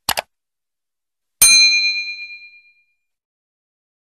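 Subscribe-button animation sound effect: a quick double mouse click, then about a second and a half in a single bright bell ding that rings out for about a second.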